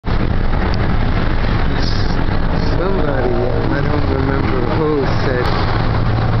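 A moving bus heard from inside the cabin through an open side window: a steady, loud low rumble of engine and road noise. Voices talk over it in the second half.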